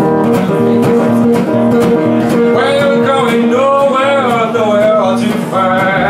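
Resonator guitar strummed in a blues rhythm, with a harmonica playing over it. The harmonica holds long notes, then from about halfway through plays wavering, bent notes.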